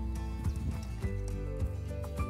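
Background music: sustained pitched chords over a steady percussive beat, about two beats a second.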